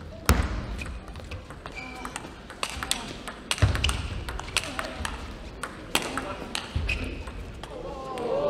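Table tennis rally: a celluloid ball clicking back and forth off the bats and the table in quick succession, echoing in a large hall. Three heavier low thumps come at about three-second intervals.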